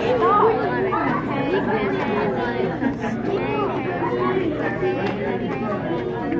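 Crowd chatter: many people talking at once, overlapping voices with no single one standing out.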